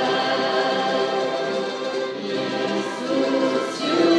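Church orchestra of strings and winds playing a slow hymn in long held chords, with voices singing along.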